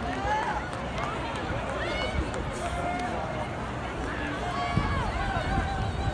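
Indistinct chatter of spectators in stadium stands, several voices talking at once with no clear words.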